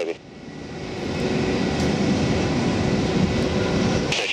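Boeing 747 jet engines heard across the airfield as the airliner rolls out on the runway after landing: a rough, steady roar that swells over the first second or so and then holds.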